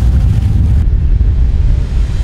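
Loud, steady low rumble of a boat underway on open water, with wind buffeting the microphone; the sound shifts slightly about a second in.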